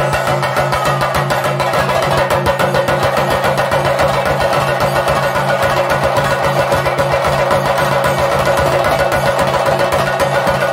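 Ensemble of chenda drums beaten with sticks in a fast, continuous rhythm, with steady held notes from a saxophone over the drumming.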